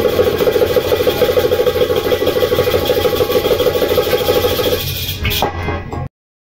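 Goblet drum (Kashmiri tumbaknari) played in a fast, even roll under a single held harmonium note, ending a song. The roll stops shortly before the end, followed by a last sharp stroke.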